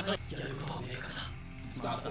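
Anime character dialogue in Japanese over background music.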